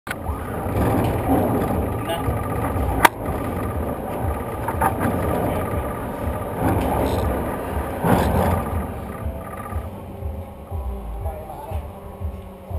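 Busy roller-coaster loading-station noise: indistinct voices and a general clatter over a low rumble, with a sharp click about three seconds in and a smaller one about two seconds later.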